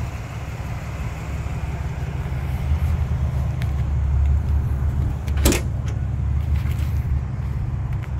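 Steady low rumble with a single sharp click about five and a half seconds in: the pickup's tailgate latch releasing as the tailgate is let down.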